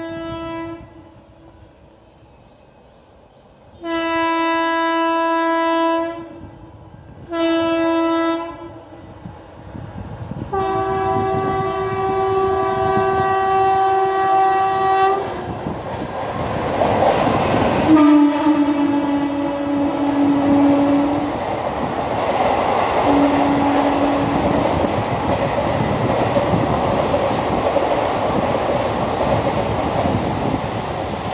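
An Indian Railways WAP4 electric locomotive's horn sounds a series of blasts as the express approaches at nearly 100 km/h: two short ones, then a long one of about five seconds. About halfway through, the train runs past with a loud rumble and clatter of coach wheels that lasts to the end. Two more horn blasts over it are lower in pitch once the locomotive has gone by.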